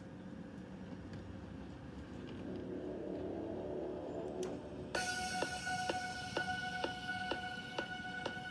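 Soundtrack of a countdown timer video playing through laptop speakers: a swelling intro, then from about five seconds in, steady held tones over a ticking beat about twice a second as the count starts.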